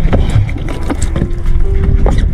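Steady low rumble of a fishing boat at sea, with wind on the microphone and a few short knocks.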